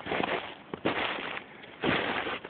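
A person's footsteps in snow, three steps a little under a second apart.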